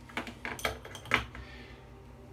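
A few light metallic clinks and taps in quick succession, the loudest about a second in, as a metal double-edge safety razor is knocked against and set down on the sink after a shaving pass.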